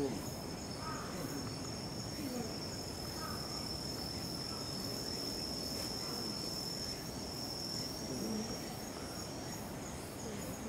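Insects singing in a steady, unbroken high-pitched tone, with faint distant human voices now and then.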